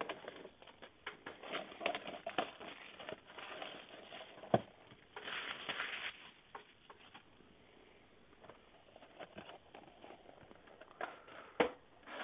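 Scattered rustling and light clicks of a cardboard trading card box and its plastic wrapping being handled, with a brief denser rustle about five seconds in.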